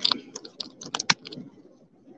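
A rapid, irregular run of about a dozen sharp clicks and taps over the first second and a half, then they stop. This is the sound of a phone being handled right against its microphone.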